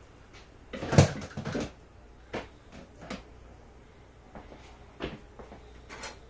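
Handling knocks and clicks as plastic tubing and hive parts are moved and set down: a loud cluster of bumps about a second in, then a few single sharp clicks.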